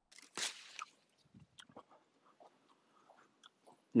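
A crisp crunch about half a second in, a bite into an apple, followed by faint, scattered chewing sounds.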